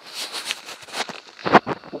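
Rustling handling noise, then a few sharp knocks about one and a half seconds in.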